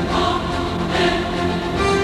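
Music with a choir singing sustained notes.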